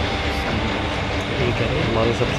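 Steady room noise, an even hiss with a low hum, with indistinct voices faintly underneath.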